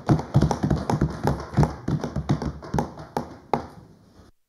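Parliament members thumping their hands on wooden desks in approval at the end of a speech: uneven knocks, a few a second, thinning out toward the end.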